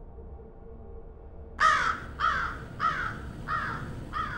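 A crow cawing in a quick series: about four harsh caws roughly half a second apart, starting about one and a half seconds in, over a faint low hum.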